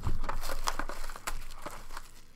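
Hands opening a Sport Kings trading-card box: a run of crackly rustles and clicks of wrapper and cardboard being handled and torn.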